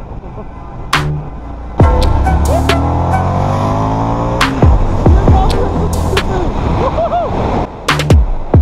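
Indian FTR motorcycle's V-twin engine accelerating hard, its note jumping up about two seconds in and climbing in pitch as speed builds, heard together with background music.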